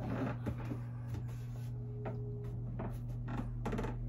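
Scattered faint knocks and shuffling from a person moving about and searching the room, with a few sharper clicks in the first second and again near the end, over a steady low electrical hum.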